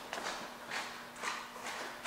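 Faint footsteps and scuffs on a concrete floor: a few soft steps about half a second apart.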